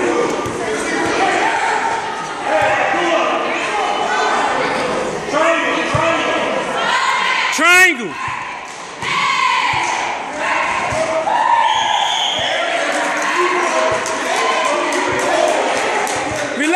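Basketball game sounds in a reverberant gym: the ball bouncing on the court floor in scattered knocks over a steady background of indistinct voices from players and spectators. Just before the halfway point, a loud sharp sneaker squeak.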